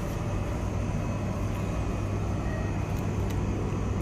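Steady low hum and faint hiss of a store's background noise, with no distinct event.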